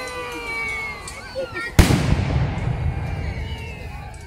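A single black-powder cannon shot: a sharp, loud bang about two seconds in, followed by a long low rumble that fades away.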